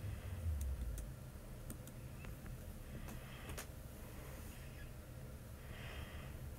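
Quiet room tone with a low rumble of a handheld phone microphone being moved in the first second, then a few faint, sharp clicks.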